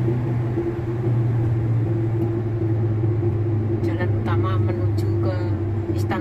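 A car's engine and road noise heard from inside the moving cabin, a steady low drone.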